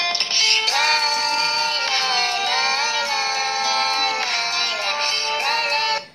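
A song with a sung vocal line playing through the Samsung Galaxy M04 phone's loudspeaker, cutting off suddenly at the very end.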